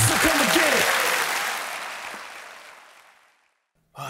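Audience applause with a few voices in the first second, fading out steadily to silence over about three seconds.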